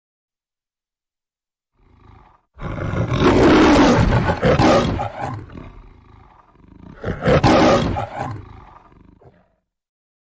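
The MGM lion's trademark roar from the studio logo: a short low growl, then two long roars a few seconds apart.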